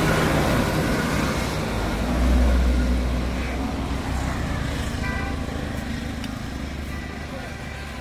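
A motor vehicle passing on the road close by: a low engine and tyre rumble that swells to its loudest about two and a half seconds in, then slowly fades.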